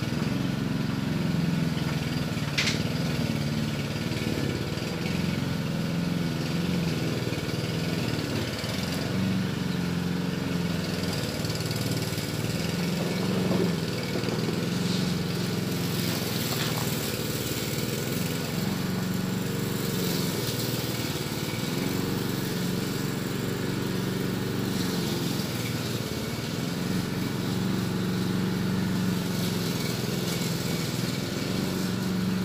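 An engine idling steadily, with one brief click about two and a half seconds in.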